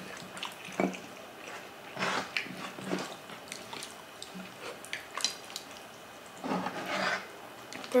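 Close-miked eating sounds: wet chewing and lip smacking with scattered small clicks, and a couple of louder mouth-noise bursts about two seconds in and near the end.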